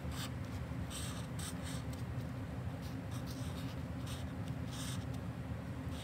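Permanent marker writing on a paper worksheet: several short, faint strokes about a second apart as a word is written letter by letter.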